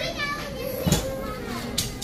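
High-pitched children's voices and chatter in a busy shop, with a short thump about a second in.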